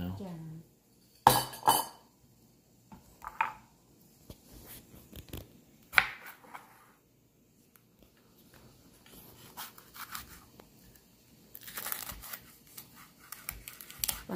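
Knife slicing jalapeño peppers on a wooden cutting board: two sharp knocks of the blade on the board about a second in, then scattered single cuts, and a run of quick small cuts and taps near the end.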